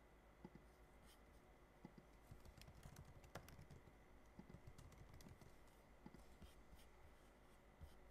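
Faint computer keyboard and mouse clicks: scattered single clicks, with a quick run of keystrokes about two to three seconds in and another near the middle.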